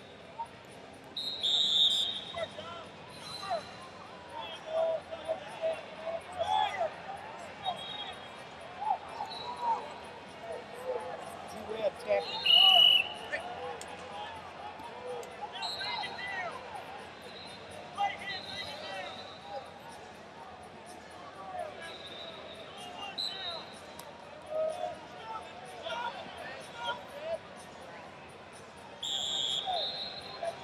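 Wrestling arena ambience: many voices of coaches and spectators shouting and talking across the hall, with several short, shrill referee whistle blasts, the loudest about twelve seconds in, and scattered thuds.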